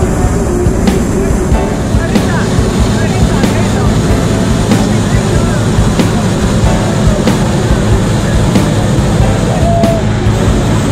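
Hot-air balloon propane burner firing, a steady loud rush, heard together with background music and people's voices.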